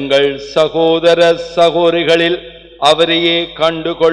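Only speech: a priest's voice praying aloud into a microphone in measured, cadenced phrases, with a short pause about two and a half seconds in.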